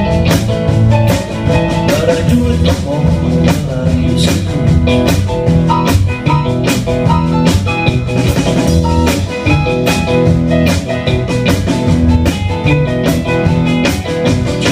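Rock band playing live in an instrumental passage: electric guitar and bass over a drum kit keeping a steady beat, with no vocals.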